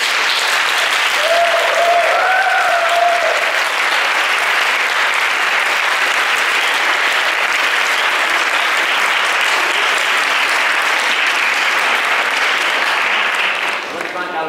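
Audience applauding steadily, stopping near the end.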